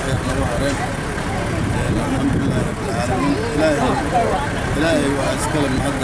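A man speaking into a handheld microphone, over steady low background noise.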